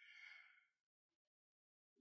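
Near silence, with a faint breath in the first half second.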